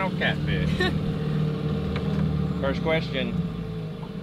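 A steady low engine hum that stops just before the end, with short indistinct voices about half a second in and again near three seconds.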